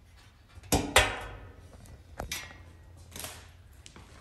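Thin sheet-metal grill cabinet panels knocking as they are handled and pinned together: two sharp clanks with a short metallic ring about a second in, then a few lighter knocks and clicks.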